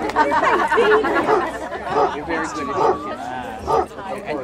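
People talking and chattering, with no clear words standing out.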